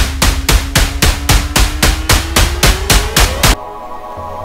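Intro sting: heavy percussive hits about four a second over a tone that rises in pitch, cutting off suddenly about three and a half seconds in. A held ambient music chord follows.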